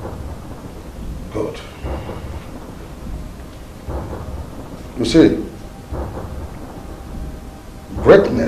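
Thunder sound effect: a low, steady rumble with louder sudden peaks about one and a half seconds in and about five seconds in, the second the loudest.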